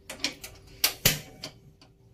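Knob of a portable gas stove being turned to light the burner, its igniter snapping with a few sharp clicks within about the first second.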